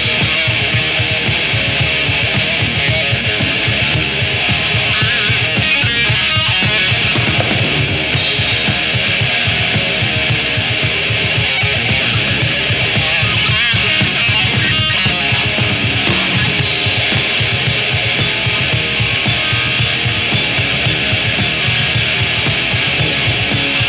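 Rock band playing live: electric guitar over a drum kit keeping a fast, steady beat. There is a cymbal crash about eight seconds in and another at about sixteen seconds.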